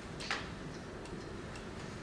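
A quiet pause: faint room tone in a lecture hall, with one short soft noise about a third of a second in and a few very faint ticks.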